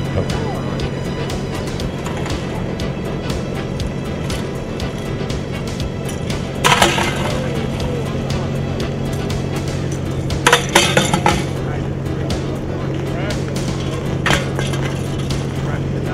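Background music over a steady low hum, with a few sharp clinking knocks of small thrown objects striking the ice around a plastic bucket: one about seven seconds in, a quick run of several around ten to eleven seconds, and one near fourteen seconds.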